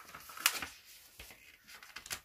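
A page of a paperback picture book being turned by hand: a quick rustle of paper about half a second in, followed by fainter handling noises.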